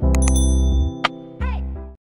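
Electronic music with a heavy bass, laid under a subscribe-button animation's sound effects: a few sharp mouse clicks and a bell-like ding that rings briefly just after the start. The music cuts off suddenly just before the end.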